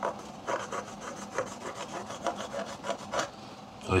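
Fingernail scratching back and forth across a wooden offcut coated in a thick layer of black oil-based paint, a quick series of short scratchy strokes, a few a second. The thick paint coat scores under the nail.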